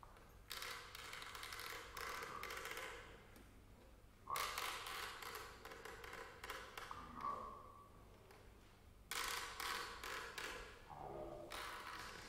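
Sparse free-improvised music of small objects: clusters of taps, clicks and clatters, each dying away with a short ring, starting about half a second, four seconds and nine seconds in. Now and then a brief pitched tone sounds, and one slides downward near the end.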